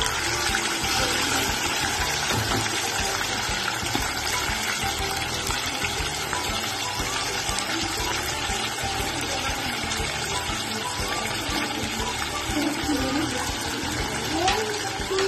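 Hot oil sizzling steadily as pieces of food deep-fry in a pot on a gas stove.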